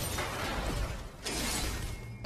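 Film sound effects of smashing and crackling crashes, like a lightsaber hacking apart a metal console with sparks flying, dipping briefly a little past halfway.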